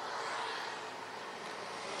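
Engine noise swelling up and then holding steady.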